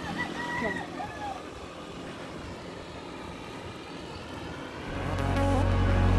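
Steady outdoor road noise heard while riding a bicycle, with a faint voice in the first second or so. Background music fades back in about five seconds in.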